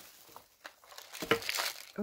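Tissue paper crinkling and rustling as hands open it around a gift box, faint at first and louder in the second half.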